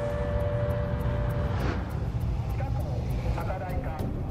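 Outdoor warning siren holding a steady tone and fading out about a second and a half in, over a continuous low rumble.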